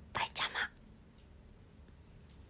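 A young woman's brief whisper of two or three quick syllables, near the start, with faint room tone after it.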